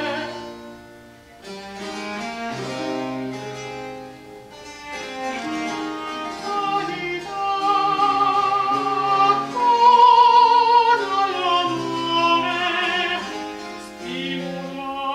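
Baroque opera music: a chamber ensemble of bowed strings, harpsichord and lute playing, with a singer's voice and its vibrato becoming clearest in the second half.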